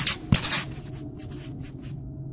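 Marker pen writing on a board: a quick run of scratchy strokes, loudest in the first half second, then lighter, shorter strokes toward the end.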